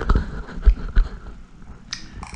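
Handling noise: a few dull, low thumps, then a short sharp click near the end.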